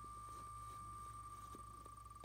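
The spinning-wheel tick sound of the wheelofnames.com name picker, playing faintly from a phone's speaker: ticks so fast they blend into one steady high tone, starting to break into separate ticks near the end as the wheel slows.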